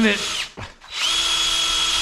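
Hand-held electric drill spinning up about a second in and running at a steady high-pitched whine, boring a hole through a metal transmission-cooler mounting bracket with a small bit.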